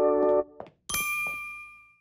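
A held, voice-like cartoon note stops about half a second in. About a second in, a bright bell-like ding sound effect rings out and fades away, marking the closing circle wipe to black.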